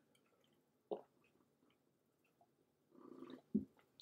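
A man drinking beer from a glass, with a gulp about a second in. Near the end comes a breath and a soft knock as the glass is set down on the table.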